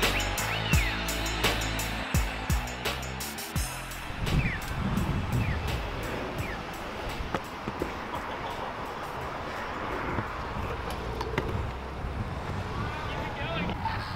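Music with a beat plays for the first few seconds and ends about three and a half seconds in. After it comes a steady outdoor noise of kick-scooter wheels rolling on asphalt, with faint voices near the end.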